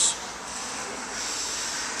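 Steady hiss of falling rain, even throughout, with no distinct events.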